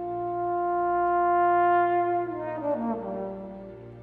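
A trombone holding one long note that swells louder, then dropping through a quick falling run of notes to a lower note that fades away.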